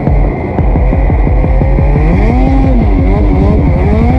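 Two-stroke snowmobile engine of a 2020 Ski-Doo Summit 850 running hard on the move. Its revs dip and rise again about halfway through, then climb near the end.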